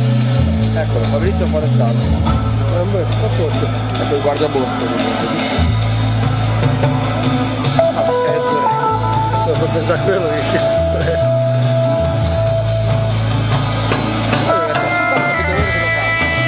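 Live jazz band: guitar lines over drum kit and cymbals, with a bass line of long held low notes.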